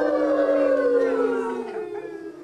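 A human imitation of a coyote howl: one long drawn-out 'ooo' held and sliding slowly down in pitch, fading out near the end.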